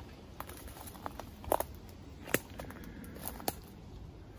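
Footsteps through dry leaf litter and undergrowth, with a handful of sharp, irregular cracks of twigs snapping underfoot.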